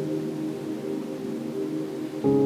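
Slow ambient background music: several soft tones held steadily as one sustained chord.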